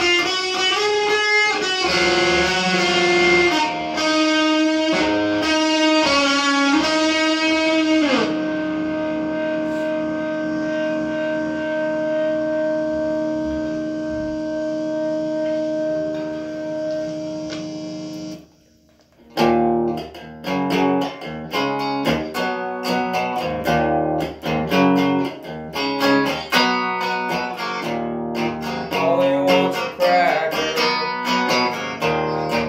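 Stratocaster-style electric guitar being played: picked chords and notes, then a chord held ringing for about ten seconds. The chord is cut off suddenly, and after a brief gap comes a quicker picked riff.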